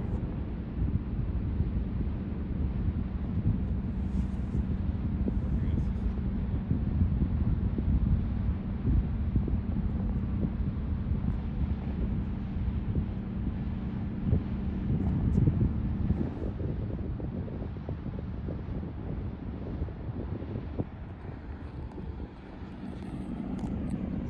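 Low, steady drone of the diesel engine of the 1968 self-unloading lake freighter Frontenac as it passes, with a few steady tones in its hum. Wind gusts on the microphone.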